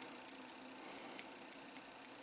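A handful of light, sharp clicks from a handheld LED clock kit board, about seven in two seconds at uneven spacing, over a quiet background.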